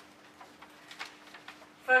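Faint room tone in a pause in speech, with a steady low hum and a few soft ticks; a woman's voice starts near the end.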